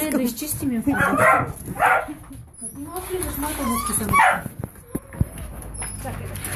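Young puppies barking in short yaps, three of them spread across a few seconds.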